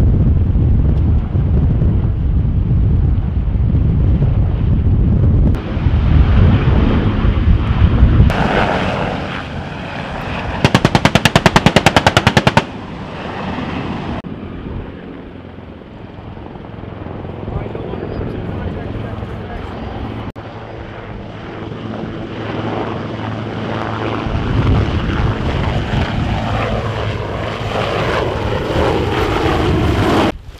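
Military helicopters flying, heard as a steady rotor and engine rumble. About eleven seconds in comes a loud burst of automatic gunfire, about two seconds of rapid, evenly spaced shots. The helicopter sound drops away in the middle and grows louder again near the end.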